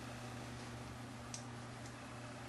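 Quiet small-room tone with a steady low hum and a single faint click a little over a second in.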